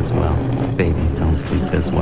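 Electronic music from a home-produced album track: a looping deep bass line under clicking percussion strokes about twice a second.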